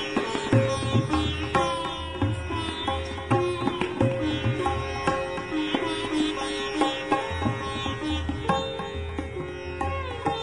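Background instrumental music in an Indian classical style: a plucked string melody with sliding, bending notes over a low pulsing accompaniment.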